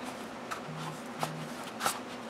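Faint handling noise as a hardcover Hobonichi notebook is slid out of a traveler's notebook cover: soft rustling with a few light taps.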